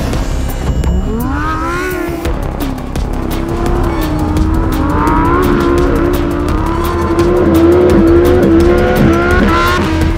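Lamborghini Huracán Sterrato's V10 engine revving up in a rising sweep, then held at high revs with the pitch wavering slightly, over background music.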